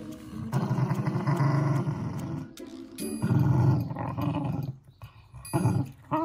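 Adult Shiba Inu mother growling at her young puppy with bared teeth, in three rough bouts, a warning to the pup.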